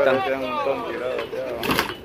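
Men's voices talking in Spanish among a group of people. A short hissing rush comes near the end.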